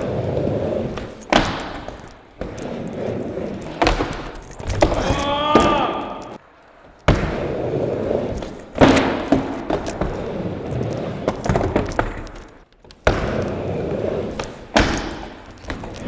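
Skateboard wheels rolling over a wooden mini ramp with a steady rumble. Sharp clacks and thuds come every second or two as the board is popped, lands and strikes the ramp.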